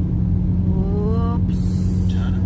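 Car engine and road noise heard from inside the cabin: a steady low hum as the car pulls up a narrow hill. About halfway through there is a short rising voice-like tone, followed by a brief hiss.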